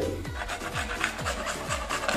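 Beetroot being grated on a handheld plastic grater, in quick repeated rasping strokes. Background music with a steady beat plays underneath.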